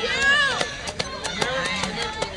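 Spectators' voices calling out and talking, with a run of short, sharp knocks or clicks through the second half.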